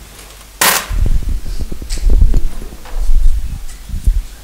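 Microphone handling noise: a sharp click a little over half a second in, then a run of low thumps, knocks and rumbling.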